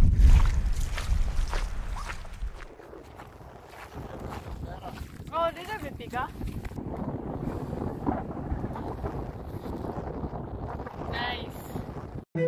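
Wind buffeting the microphone, heaviest over the first two seconds, then settling into a steady rush. Two short vocal sounds break through, one in the middle and one near the end.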